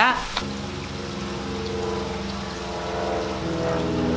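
A steady mechanical drone of several held pitches over a faint hiss, shifting slightly in pitch about three and a half seconds in.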